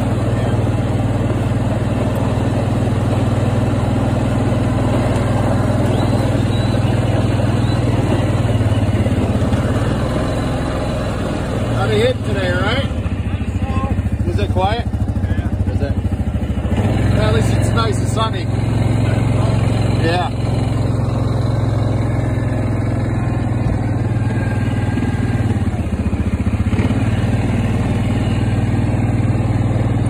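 Snowmobile engine running steadily at low speed, a constant low hum with little change in pitch.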